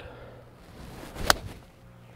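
A short rising swish of a Cobra King iron swinging down, then one crisp click as the clubface strikes the golf ball about a second and a quarter in.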